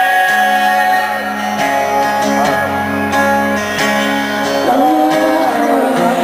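Live acoustic guitar strummed with a voice singing over it.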